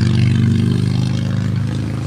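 A steady, low engine hum, easing off slightly toward the end.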